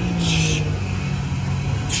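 Steady low hum of vehicle engines running at a gas station forecourt, with a short hiss about a quarter second in.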